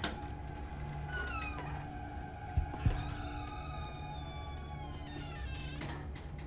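Suspense film score: a low pulsing drone under high, eerie sliding tones that fall in pitch. A sharp hit opens it, and two low thuds come a fraction of a second apart near the middle.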